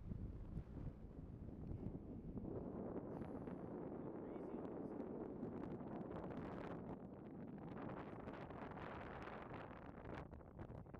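Wind gusting across the camera microphone, growing stronger about two and a half seconds in.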